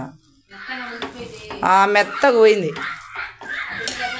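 A steel spoon scraping and clinking against an aluminium pressure cooker while scooping out cooked rice, with a person's voice speaking over it around the middle.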